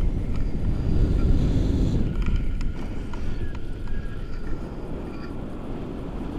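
Wind buffeting the microphone of a camera carried through the air on a paraglider in flight: a loud, low rumble that eases off toward the end.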